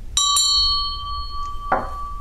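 Brass hand bell rung with two quick strikes, then ringing on with a clear, steady tone that slowly fades.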